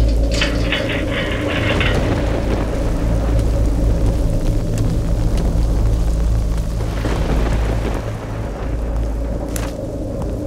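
Heavy rain falling steadily, with a deep, steady rumble underneath.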